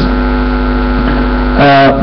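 Loud, steady electrical mains hum in the microphone and sound-system chain, a low buzz with a stack of even overtones, heard plainly in a pause between words. A man's voice comes back through the microphone near the end.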